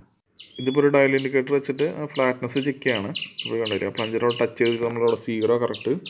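A man speaking, with high chirping repeating faintly above the voice.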